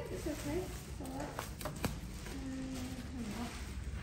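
Low voices talking in the background, with a few sharp crackles of crumpled newspaper being pulled out of a hollow clay head, about a second and a half in.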